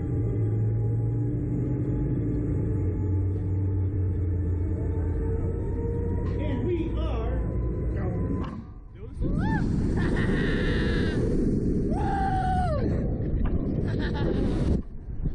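Steady low mechanical rumble of the Slingshot reverse-bungee ride while the riders sit waiting, then about nine seconds in the capsule launches: a loud rush of wind over the onboard microphone with riders screaming and yelling, their cries rising and falling in pitch.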